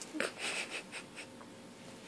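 A run of five quick, breathy puffs of breath, about four a second, fading out after a little over a second.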